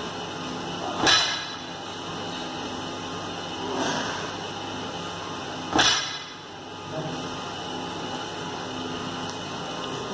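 Barbell loaded with 102 kg of rubber-coated plates knocking down on the gym floor between deadlift reps: two sharp knocks, about a second in and just before six seconds, with a softer one between, over a steady low hum.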